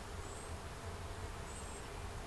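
Quiet outdoor ambience: a low steady rumble with two thin, high-pitched short notes about a second apart.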